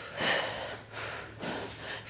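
A woman breathing hard from exertion: a strong breath out just after the start, then two fainter breaths.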